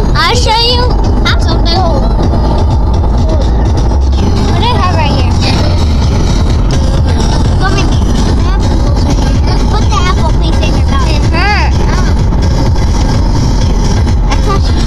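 Children's high-pitched voices, squealing and calling out in short bursts, inside a moving car over the car's steady low road rumble.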